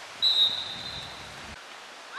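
Referee's whistle blown once: a single short, high, steady blast of under a second, a moment after the start. Play is being stopped with a player down on the pitch.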